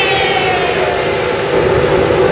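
A ship's horn sounding one long, loud, steady blast.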